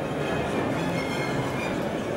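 Heavy military off-road vehicle driving over rough ground, its engine and running gear making a steady rumble.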